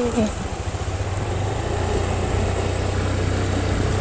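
Vehicle engine running steadily beneath the camera while riding along a road, with a steady low hum and rushing wind on the microphone.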